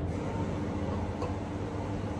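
Washing machine running in the background: a steady low mechanical hum.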